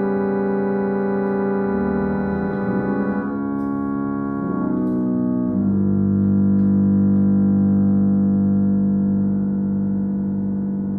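Schiedmayer pedal harmonium, a reed organ, playing slow sustained chords in an improvisation. The chords change about three and about five and a half seconds in, then settle on a low held chord with pedal bass that swells and eases off slightly.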